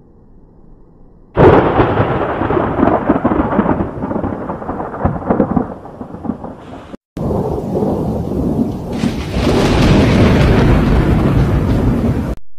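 Thunder close by: a sudden loud crack about a second and a half in, rolling into a long rumble. It breaks off abruptly, and after a short gap a second peal of thunder starts up and swells louder near the end.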